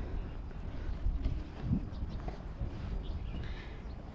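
Outdoor ambience dominated by a steady low rumble of wind on the microphone, with faint scattered rustle and knocks from the handheld camera.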